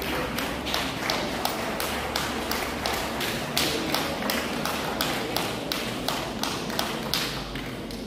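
A congregation clapping in unison, steady rhythmic claps about three a second, which stop shortly before the end.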